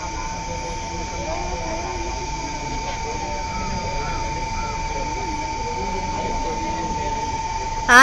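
Faint distant voices over a steady low rumble, with a thin, unbroken high whine running throughout.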